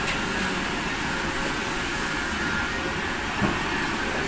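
Steady, even background noise, a hiss with a faint steady hum, between stretches of talk; a small soft knock about three and a half seconds in.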